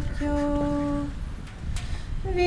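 A woman singing unaccompanied, holding one steady note for about a second, then pausing before the next phrase. Wind rumbles on the microphone throughout.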